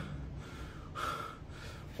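A man breathing in the pause between spoken lines: two short breaths, one at the start and one about a second in.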